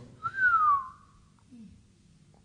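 A person whistles one short note, under a second long, that rises briefly and then slides down in pitch.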